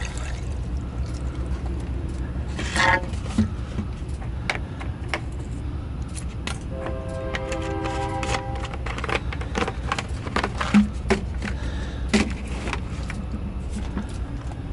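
Heavy diesel truck engine idling steadily, with scattered clicks and knocks of a plastic jug and cap being handled at the open engine bay. A brief steady whining tone sounds about halfway through.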